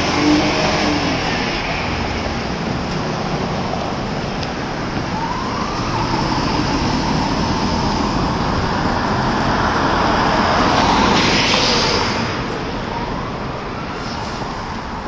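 City street traffic: cars driving past a corner, a steady rush of engine and tyre noise that swells to a peak about eleven seconds in as a vehicle passes close, then eases off.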